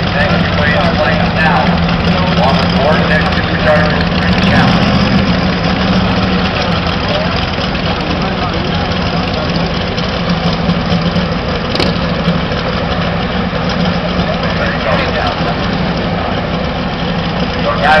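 Drag race car's engine idling steadily and loudly, holding a constant low pitch.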